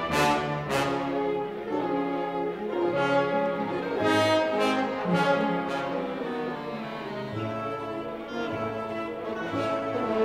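Orchestral music led by brass, slow held chords moving from one to the next, with a few sharp accented notes near the start and about four seconds in.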